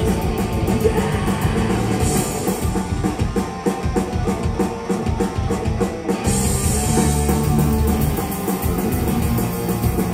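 A punk rock band playing live: distorted electric guitars, bass guitar and a drum kit. About six seconds in the cymbals come in louder and fuller.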